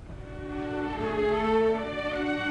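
Opera orchestra entering softly on sustained chords, bowed strings to the fore, and swelling in loudness about a second in.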